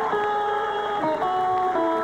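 House band music with guitar playing a run of held notes that change pitch every half second or so: the bumper music that takes the show to a commercial break.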